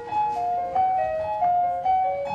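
Piano accompaniment playing a quick melody of short notes stepping up and down, with no singing over it.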